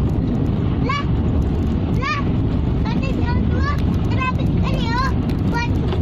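Steady road and engine noise inside a moving car. Over it, a young child makes short, high-pitched, wordless rising squeals about once a second, coming faster in the second half.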